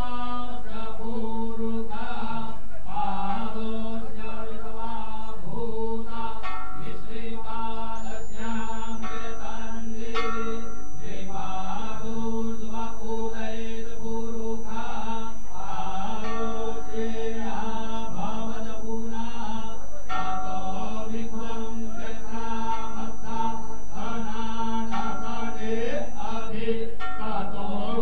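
Devotional mantra chanting sung in long phrases over a steady drone.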